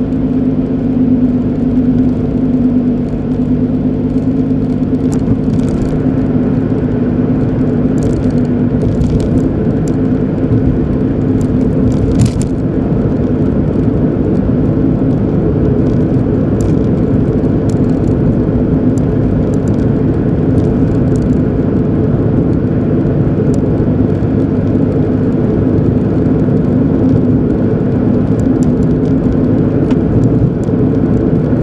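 A car being driven at a steady cruise, heard from inside the cabin: a steady engine hum over tyre and road rumble, with a few faint ticks in the first half.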